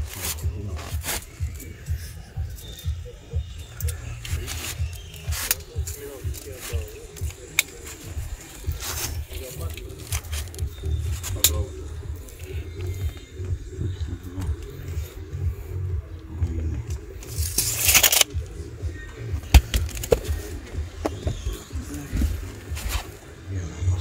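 Scattered clicks and handling noise from hands working a plastic window-adjoining profile and a tape measure, over a steady low rumble. About eighteen seconds in, there is a brief loud rattling whir, like a tape measure blade reeling back in.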